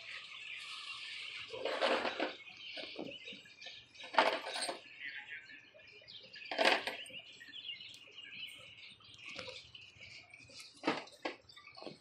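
Scattered rustles, knocks and clicks from the camera and work being handled and moved about, with faint bird chirping in the background.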